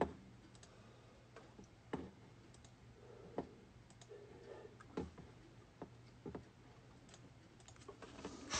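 Faint, scattered clicks and light taps, about one every second or two, from small objects being handled by hand.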